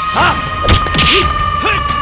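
Film fight sound effects: two sharp punch impacts, with short grunts and shouts between them, over background music holding one long steady note.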